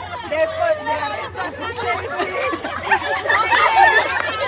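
A group of women's voices talking over one another, a steady babble of overlapping chatter.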